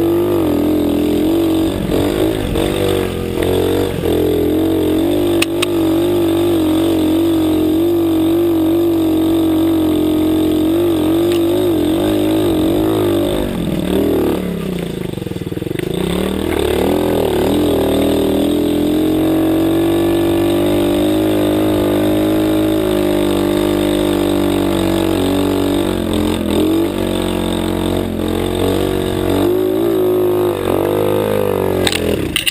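A 110cc single-cylinder four-stroke pit bike engine running hard under load along a dirt trail. About halfway through the revs drop sharply, then climb back up.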